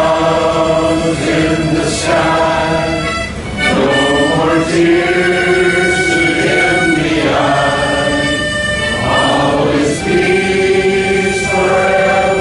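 A large two-tier harmonica playing a slow tune in full chords, each chord held for one to two seconds, with short breaks between phrases about three and a half seconds in and again near ten seconds.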